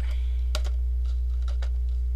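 A steady low electrical mains hum, with a few light clicks from hands handling plastic: one pair about half a second in and another near the middle.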